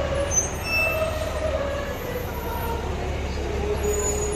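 City street noise: a steady low rumble, with a faint wavering tone above it that comes and goes.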